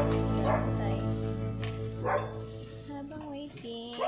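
Small pet dogs begin yipping and whining, a short pitched whine rising and falling near the end, while a song's last chord fades out underneath.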